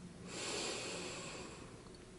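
A person's long audible breath, lasting about a second and a half, taken while holding a deep forearm lunge stretch.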